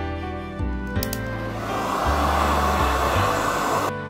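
A steady rushing hiss of air during wig styling starts after a couple of clicks about a second in and cuts off suddenly just before the end, over soft background music.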